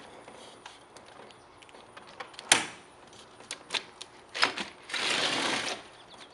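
A stiff sliding screen door being worked open: a series of clacks and knocks from its frame, then a scraping slide along its track for most of a second near the end.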